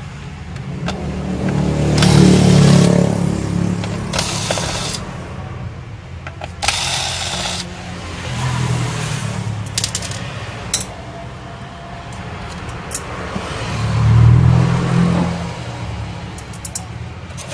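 Electric precision screwdriver whirring in several short runs as it backs out the screws under a laptop keyboard, with small metal screws clicking and scraping in between.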